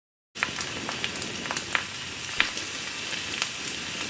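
A steak sizzling on a hot grill: a steady hiss with scattered sharp pops and crackles, starting abruptly just after the opening silence.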